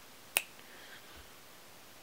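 A single sharp click about a third of a second in, short and snap-like.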